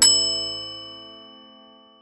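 A single bright metallic ding, struck once and ringing out with several overtones, fading away over about two seconds. It is an intro sound effect closing the channel's opening music.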